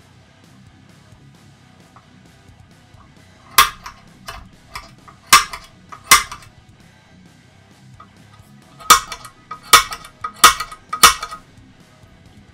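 Center punch clicking against an aluminium C-beam extrusion to mark the centre of a hole to be drilled: sharp metallic clicks with a short ring, three about a second apart in the middle, then four more in quick succession near the end.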